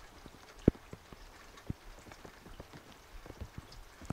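Scattered light taps and clicks over a faint background, with one sharper knock under a second in and another about a second later.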